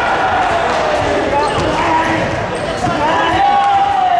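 Several voices shouting and calling out over one another during a karate kumite bout, with thuds of bare feet on the competition mats.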